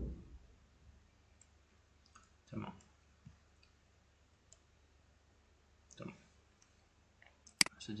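Computer mouse clicking: scattered light clicks, then a sharper, louder pair of clicks near the end.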